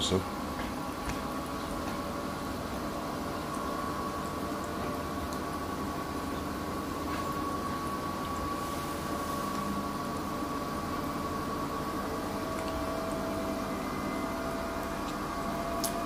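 Festival dumplings frying in a pot of hot vegetable oil: a steady, gentle sizzle with faint crackles, over a steady hum.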